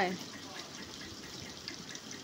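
French toast frying in butter in a nonstick pan: a steady, soft sizzle.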